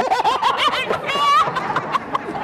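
A person laughing in quick high-pitched peals, several a second, with one drawn-out squeal a little past the middle.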